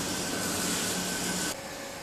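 Steady hiss of a robotic arc welder at work, with a thin steady tone and a low hum over it. About a second and a half in, it cuts off to a quieter workshop background.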